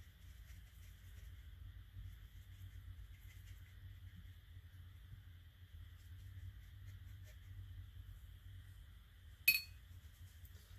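Faint dabbing of a watercolour brush on paper over a low steady room hum. Near the end comes a single sharp clink with a brief ring.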